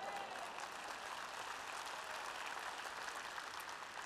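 Large audience applauding in a big hall, a steady, fairly quiet spatter of clapping in response to a question from the stage.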